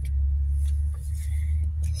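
Skeins of yarn and their paper labels rustling as they are handled, over a low steady rumble that is loudest in the first second and a half.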